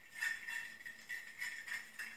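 Back end of a plastic mixing spoon stirring sugar into water in a plastic petri dish, making quick light scrapes and clicks against the dish, about three a second.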